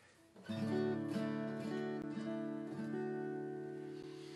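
Acoustic guitar strummed, starting about half a second in, with a few chords left ringing and changing several times as they slowly fade.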